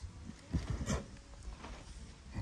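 A zebu bull lowering itself to lie down on dry dirt: a few short, soft thumps and scuffs as its body settles, the clearest about half a second and about a second in.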